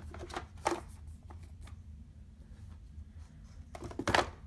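Cardboard game boards being handled and fitted into a game box insert: a few light taps and clicks in the first second or so, then a louder scrape of cardboard sliding into place near the end.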